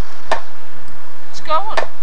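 Sharp strikes of a hand tool, two main blows about a second and a half apart with a lighter knock between, during outdoor fence work.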